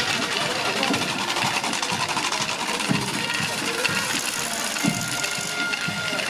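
Dense, continuous jingling of the many small round bells sewn onto a carnival jester's patchwork costume, shaken as the wearer moves close by, with voices around it.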